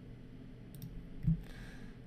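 Computer mouse clicks: a faint click a little under a second in, then a louder one just past the middle.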